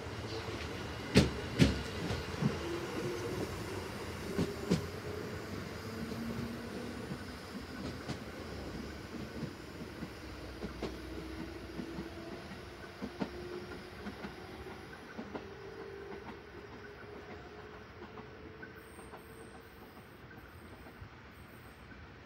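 A JR Central 311 series electric train pulling away from the platform and accelerating. Its wheels click over rail joints in two sharp pairs early on, then in fainter knocks, under a drone that slowly rises in pitch. The whole sound fades as the train draws away.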